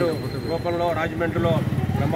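A man speaking Telugu into a close microphone, over a steady low rumble.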